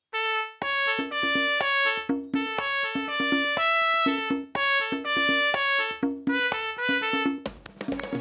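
A trumpet plays a bouncy tune of short notes over a steady drum beat. The tune starts just after a brief pause and stops about half a second before the end.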